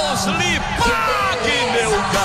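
A radio football commentator's voice calling out in long cries that slide up and down in pitch, over a background music track, as he celebrates a goal.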